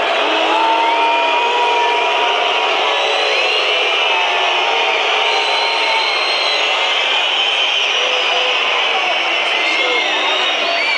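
Large stadium crowd cheering and shouting, a loud, steady mass of voices with single long shouts carrying above it.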